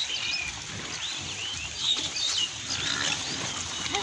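A herd of pigs grunting low while they forage, with many small birds chirping high above them throughout.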